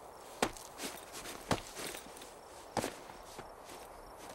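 Boot footsteps and scuffs on rock and loose stone as someone scrambles up a rocky slope. There are three sharper steps and a few fainter crunches between them.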